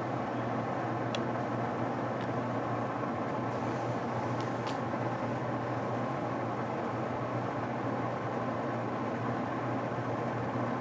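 Steady low mechanical hum that does not change, with a few faint light ticks scattered through it.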